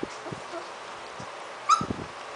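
A litter of 3½-week-old puppies playing: scattered soft knocks and scuffles, and one short, high yelp near the end.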